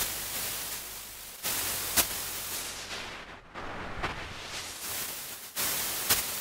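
Loud synthetic white-noise hiss from a noise oscillator in Ableton's Sampler, standing in for tape hiss. It plays in several swells with short dips and a couple of sharp clicks.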